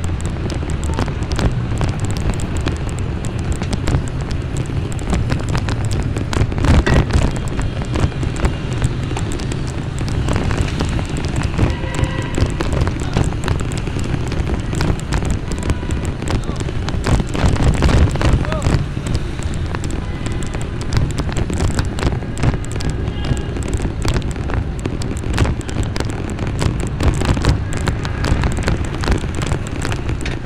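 Wind buffeting the microphone of a moving vehicle, a steady low noise with frequent gusty knocks, over city traffic noise.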